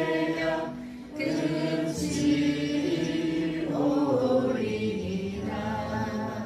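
A Korean worship song sung with long held notes over a soft accompaniment, with a short dip about a second in.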